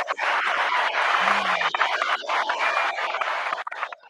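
Applause: a dense, steady patter of clapping that stops shortly before the end.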